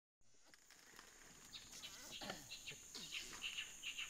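Quiet tropical forest ambience fading in: a steady high-pitched insect drone with a string of short, repeated bird calls growing busier toward the end.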